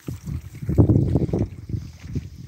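Water sloshing and rumbling against a camera moved through pond water, heard as loud, muffled, irregular low surges that start suddenly and peak about a second in.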